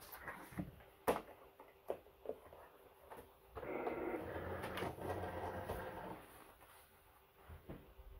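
A plastic cutting mat sliding across the table into a Cricut cutting machine, a scraping sound lasting about two and a half seconds, after a few light taps of handling the paper and mat.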